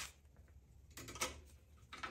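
Faint metal clicks of hand tools on a coaster-brake bike's brake-arm clamp, as pliers hold the nut and a screwdriver tightens the bolt. There is one click at the start, a small cluster of clicks about a second in, and another near the end.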